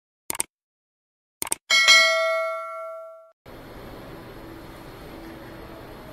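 Subscribe-button animation sound effect: a pair of quick clicks, then another pair followed by a bright bell ding that rings for about a second and a half before cutting off. Steady background noise of a busy indoor shopping hall comes in shortly after.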